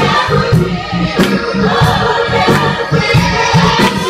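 Gospel choir of women singing with instrumental accompaniment and a steady bass beat.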